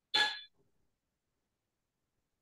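A single short, bright clink that rings briefly and fades within about half a second.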